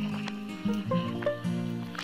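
Background instrumental music: a run of held notes, each changing to the next after a fraction of a second.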